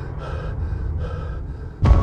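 Film-trailer sound design: a low rumbling drone with a few faint gasping breaths. Near the end a sudden heavy impact hit with a deep boom and a sustained metallic ringing tone lands on the title card.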